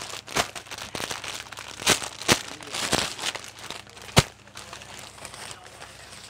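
Plastic packet wrapping crinkling and rustling as a packed dupatta is handled and pulled out, with several sharp crackles, the sharpest about four seconds in.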